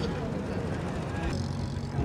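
Steady background hubbub of people talking, with a vehicle engine running at a low hum.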